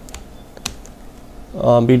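A few computer keyboard keystrokes, one clearly louder than the rest, as two letters are typed. A voice starts speaking near the end.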